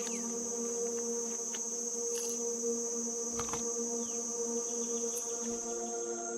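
Background ambient music of steady, held tones at several pitches, over a continuous high-pitched buzz. A short sharp click comes about three and a half seconds in.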